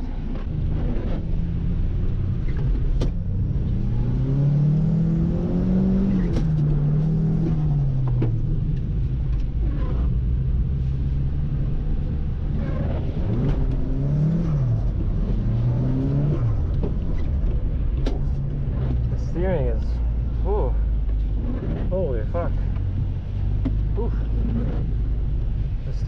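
Nissan Silvia S15's engine heard from inside the cabin during a drift run, revving up and down in long swells over a steady low drone.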